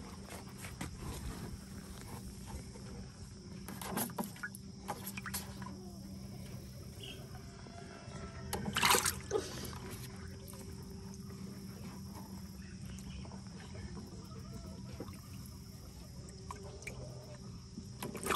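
Water sloshing and splashing in a plastic tub as a young chicken is held and dipped in it by hand. Louder splashes come about four seconds in and again, loudest, about nine seconds in.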